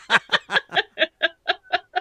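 A person laughing: a quick, even run of short 'ha' pulses, about five a second, trailing off.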